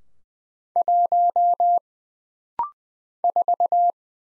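Morse code tone at 20 words per minute, a pure beep around 700 Hz. It first sends the digit one (a dot and four dashes), then gives a brief rising two-note courtesy beep, then sends the digit four (four dots and a dash).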